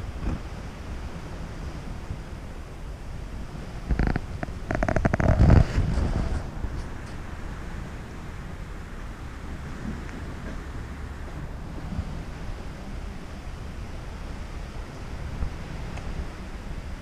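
Wind rumbling on the microphone, with a louder burst of rough crackling noise between about four and six seconds in.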